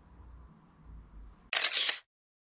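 A low rumble, then about one and a half seconds in a short, loud camera-shutter sound effect, cut off into dead silence.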